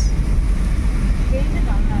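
Steady low rumble inside a car's cabin as it drives a wet road in rain, with a faint voice near the end.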